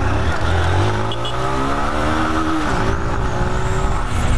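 Honda Titan 160 motorcycle's single-cylinder engine pulling up in revs as the bike accelerates, its pitch rising for about two and a half seconds, then dropping sharply and running on steadily, with wind hiss from riding.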